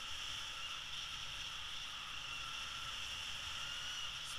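Steady rush of airflow over the camera microphone of a tandem paraglider in flight, an even hiss with a low rumble underneath.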